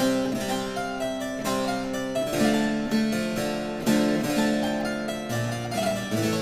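Harpsichord played in several voices at once, a slow-moving piece of early music. Each note starts with a crisp pluck and then dies away, and a low bass note comes in near the end.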